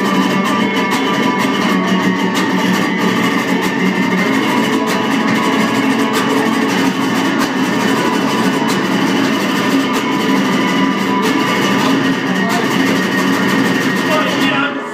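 Acoustic guitar strummed steadily in a live instrumental passage, with regular strokes and no singing.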